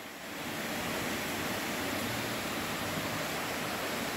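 A steady, even hiss of background noise that swells slightly in the first half second and then holds.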